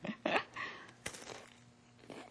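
Someone taking a bite of party finger food: a few short, faint mouth and handling sounds in the first half-second, then a single sharp click just after a second in.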